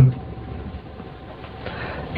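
A man's voice finishes a word right at the start, then a pause filled only by steady low background noise, a faint hum and hiss, until speech resumes.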